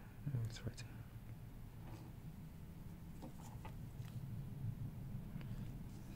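Faint handling noise from fingers turning a wristwatch over, with a few light clicks and rubs against a low room hum.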